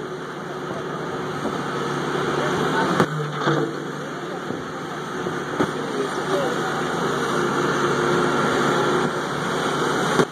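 A backhoe's engine running steadily under washing surf and indistinct chatter of onlookers, with a couple of brief knocks about three and five and a half seconds in.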